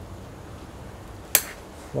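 A single sharp snip about one and a third seconds in, from bonsai scissors cutting a yew branch, over a low steady background.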